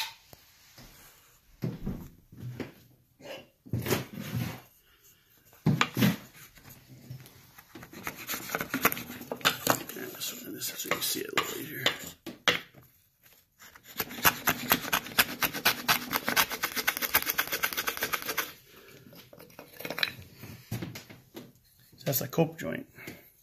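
Hand tool cutting wood on a workbench: a few separate knocks of wood on wood, then two long runs of quick, rasping cutting strokes lasting several seconds each.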